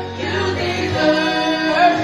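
A woman singing a gospel worship song into a microphone, with musical accompaniment; a held low note in the backing drops out about a second in.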